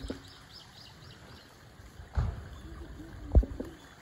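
Two short, low thumps on the microphone, about two seconds in and again near three and a half seconds, the second the louder, over a steady low outdoor background. Faint high bird chirps repeat a few times a second in the first second.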